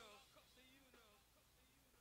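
Near silence at the very end of a song, after its fade-out, with only a faint trace of the music in the first second.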